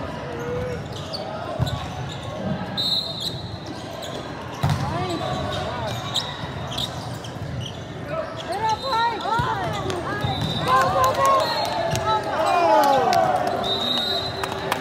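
Indoor volleyball rally in a reverberant hall: a few sharp smacks of the ball being hit, about 2, 5 and 9 seconds in, then from about 8 seconds a quick flurry of sneaker squeaks on the court floor mixed with players' shouts as the point is played out.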